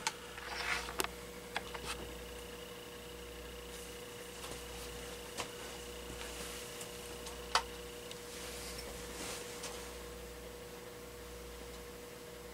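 Quiet room with a faint steady hum and a few light clicks and knocks.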